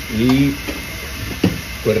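Water at a rolling boil in a wok over a gas wok burner turned up full: a steady rushing, bubbling noise, with a single sharp click about one and a half seconds in.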